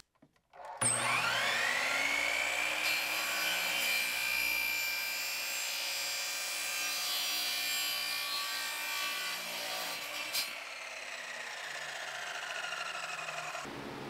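Sliding compound miter saw spinning up with a rising whine and cutting through a PVC pipe cap, then switched off about ten seconds in with a click and winding down.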